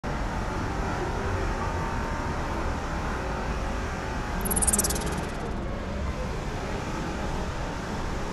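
Steady outdoor street ambience, mostly a low, even rumble. About halfway through comes a brief, high swish.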